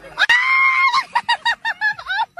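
A woman's high-pitched laughter: one long squeal, then a quick run of short hoots, about seven a second.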